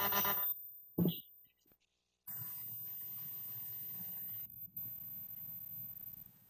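Steady hiss and hum of an open call-in telephone line, just unmuted and waiting for the caller to speak. It follows a brief burst of garbled sound at the start and a short cut to dead silence.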